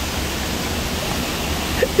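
A steady, even rushing noise with no tone in it, cutting off near the end.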